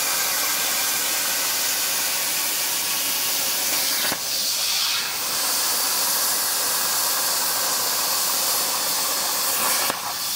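Plasma torch of a Tormach 1300PL CNC plasma table cutting metal plate: a steady, loud hiss, dipping briefly twice, about four and about five seconds in.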